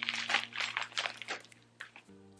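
Plastic packaging and a clear plastic stroller weather shield crinkling as they are handled, in quick rustles that die away near the end.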